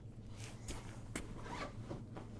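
A few short rasping scrapes and clicks of objects being handled and moved at a workbench, over a steady low hum.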